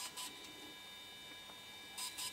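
Quiet room tone with faint steady electronic whines, and a few soft clicks at the start and end as the hard plastic body of a DJI Phantom 3 drone is handled.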